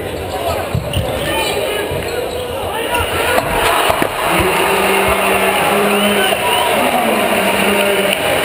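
Basketball gym crowd noise with sneakers squeaking and a ball bouncing on the hardwood court. About four seconds in, a steady low horn starts and holds nearly to the end: the arena's end-of-game buzzer.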